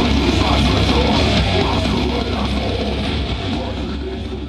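A live hardcore band playing loud, distorted electric guitar over drums, the sound slowly dying down.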